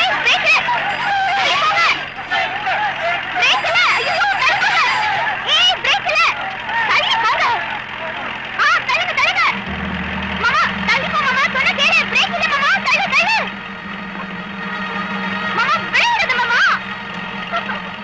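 Excited, high-pitched voices calling and shouting over one another. About ten seconds in, a tractor's engine starts a steady low hum underneath them that carries on to the end.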